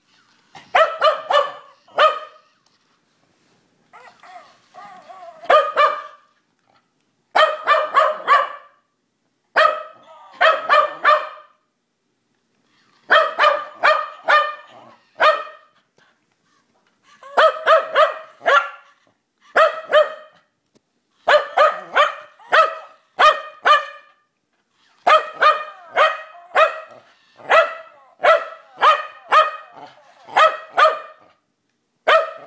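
Welsh terrier barking repeatedly, in quick runs of two to four sharp barks with short pauses between runs.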